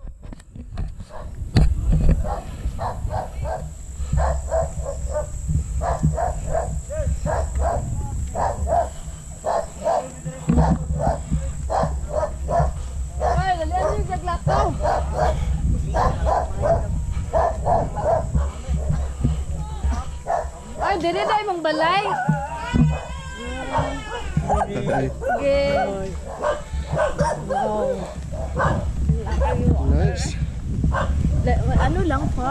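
An animal calling over and over in short strokes, about two a second, with wind rumbling on the microphone underneath.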